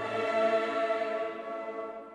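Background music: choral singing with long held notes.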